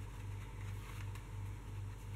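A steady low hum with a faint background hiss, pulsing slightly and evenly, with no distinct sounds standing out.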